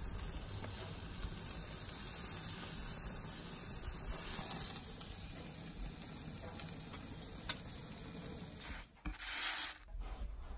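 Cheese-topped beef burger patties sizzling steadily on a grill grate over open flame. The sizzling drops out about nine seconds in, followed by a short, louder burst of noise.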